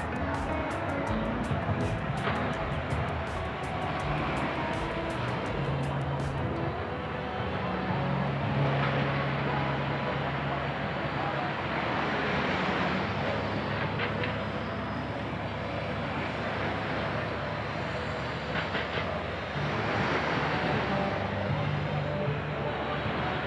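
Steady rushing noise of wind and surf on an open beach, with a low hum that swells twice.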